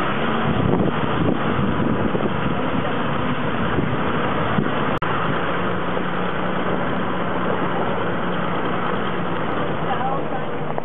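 Engine of a moving vehicle running steadily under rushing wind noise. The sound drops out for an instant about halfway, and a steady low engine hum runs on after it.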